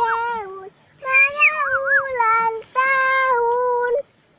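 A young child singing a birthday song in a high voice, in three drawn-out phrases of long held notes with short breaks between them.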